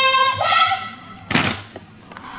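A drawn-out shouted drill command, held on one pitch, ends about half a second in. About 1.3 s in comes a single sharp thud as the squad executes the drill movement in unison, boots stamping together on the ground.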